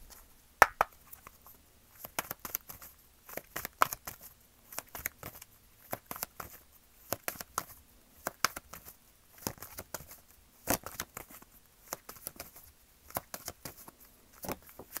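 A tarot deck being shuffled by hand: quick clusters of crisp card snaps and taps, repeating through, the sharpest snap about half a second in.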